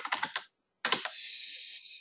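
Typing on a computer keyboard: a quick run of keystrokes in the first half second. About a second in, a steady hiss starts and holds for about a second.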